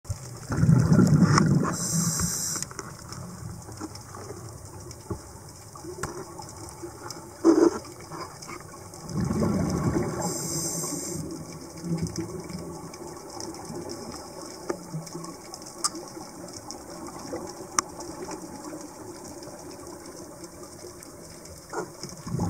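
Scuba diver's breathing heard underwater: two long bubbling exhalations, about eight seconds apart, each with a short hiss of the regulator. A steady underwater background runs beneath, with faint scattered clicks and one sharp knock about seven and a half seconds in.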